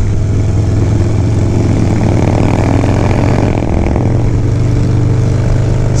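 Harley-Davidson Low Rider S's air-cooled V-twin running steadily at cruising speed through an aftermarket exhaust, heard from the rider's seat with wind rushing over the mic, the wind swelling about halfway through.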